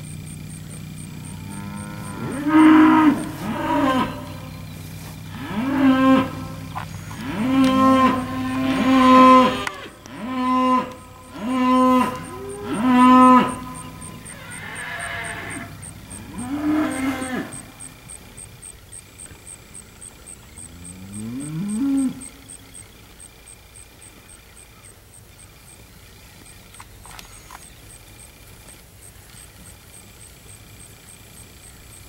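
Steers mooing over and over: about eight loud, drawn-out calls in quick succession in the first half, then two more spaced out, the last one lower and rising, after which the pen goes quieter.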